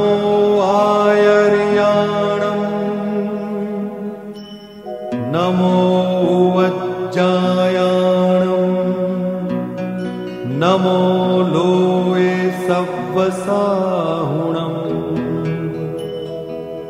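A devotional mantra chanted by a single voice in three long, drawn-out phrases, each starting with a gliding rise in pitch and held, over a steady musical drone.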